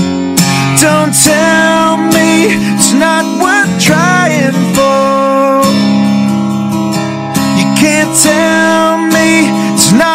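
Acoustic cover song: strummed acoustic guitar accompanying a sung melody, played continuously.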